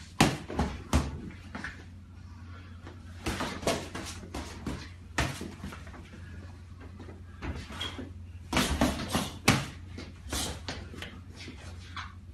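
Irregular thuds and smacks of punches with padded boxing gloves landing during sparring, in scattered clusters, the loudest near the start and about nine seconds in. A steady low hum runs underneath.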